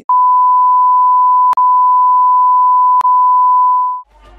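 A loud, steady electronic beep tone, one unchanging pitch held for nearly four seconds, broken by two brief clicks about a second and a half apart and fading out at the end.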